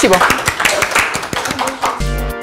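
A short round of applause: several people clapping their hands, quick and uneven.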